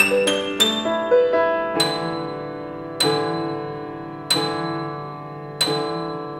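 Solo grand piano improvisation: a quick run of single notes, then four slow chords struck about every second and a quarter, each left to ring and fade.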